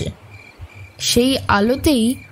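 Crickets chirping steadily in the background as a night-time sound effect under the narration.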